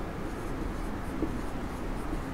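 Marker pen writing on a whiteboard, soft scratching strokes over a steady background hiss.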